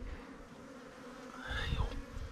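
Wild African honeybees buzzing steadily around their dug-open ground nest, a faint, even hum. A low rumble comes in during the last half second.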